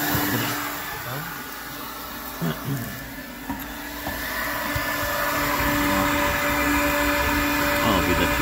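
Electric heat gun blowing hot air onto the frozen float valve and pipe of a cattle drinking trough to thaw it: a steady fan whine with a constant hum, dipping in the middle and louder again after about five seconds.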